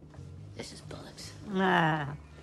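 Hushed, whispered dialogue over a low, steady music drone, then near the end a short, loud vocal sound that falls in pitch.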